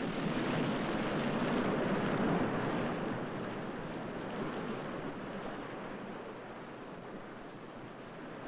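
Surf rushing and washing over intertidal rocks. It swells to its loudest about two seconds in, then slowly fades.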